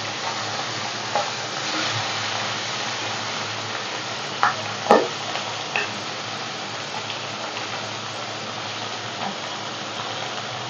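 Whole halua fish frying in hot oil in a wok, a steady sizzle. About halfway through, two short sharp knocks from the spatula against the pan stand out above it.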